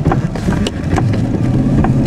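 Engine hum and wet-road tyre noise heard from inside a moving car as it turns, with scattered sharp ticks throughout.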